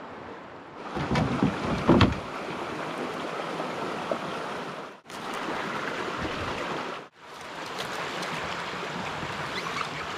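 Steady rush of water and wind on the microphone around a canoe being poled along a brook, with a few heavy knocks and bumps between one and two seconds in. The sound cuts off abruptly twice, about five and about seven seconds in.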